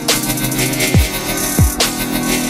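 Riddim dubstep track: kick drums that drop in pitch, about a second in and again after a second and a half, with sharp hits at the start and near the end over a held bass tone.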